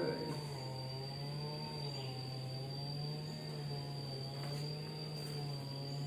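A steady hum that wavers slightly in pitch, with a thin, steady high whine over it.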